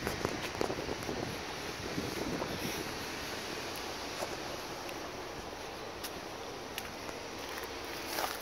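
Steady outdoor hiss of wind on a handheld phone's microphone, with a few faint, scattered clicks.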